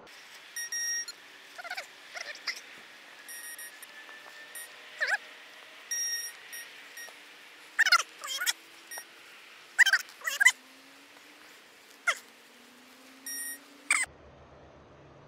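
A metal detector giving short flat beeps, about five times, as a soil plug is checked over its coil for a target. Between them come several loud, short squealing calls that bend in pitch, the loudest sounds here, from a source that isn't seen.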